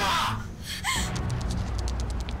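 The end of a man's shouted words, then a single short, sharp gasp about a second in, followed by a low rumble.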